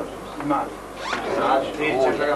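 A man's voice speaking in short phrases in a meeting room.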